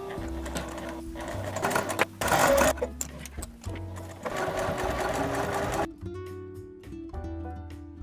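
Juki TL-2010Q sewing machine stitching down bias tape, running in spurts and stopping about six seconds in.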